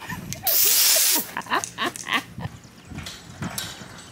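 Aerosol can of silly string spraying in one loud hiss lasting under a second, about half a second in, followed by a few short high squeals.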